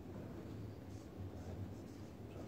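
Marker pen writing on flip-chart paper: a few short strokes over a low, steady room hum.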